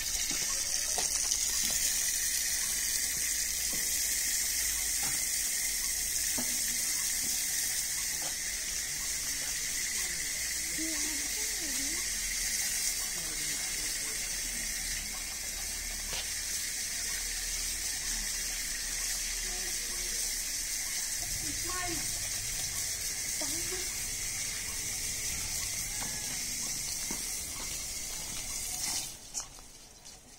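Water running steadily from taps into a concrete trough as hands are washed under them; the flow stops near the end.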